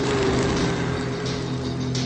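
Film trailer background music: steady held notes under a faint hiss.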